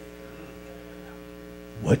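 Steady electrical mains hum. A man's voice cuts in near the end.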